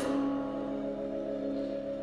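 Slow, sparse dark-jazz band playing live. A chord struck at the start rings on in long sustained notes.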